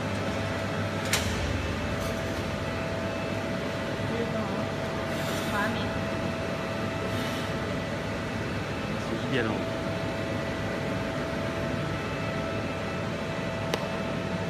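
Sandblasting cabinet's machinery humming steadily with a constant whine. A sharp click comes about a second in, and two brief hisses of air come around five and seven seconds in.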